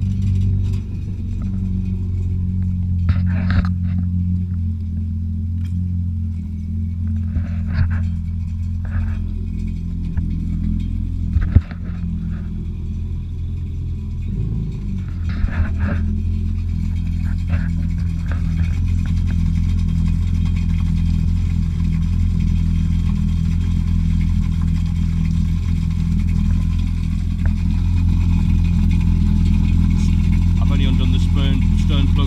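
Jet ski engine idling steadily out of the water, started for a freshwater flush through a garden-hose adapter. A few short knocks and clicks sound over it, the sharpest about eleven seconds in.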